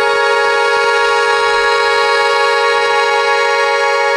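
Accordion holding one long, loud chord, steady in pitch and loudness, with a bright reedy tone.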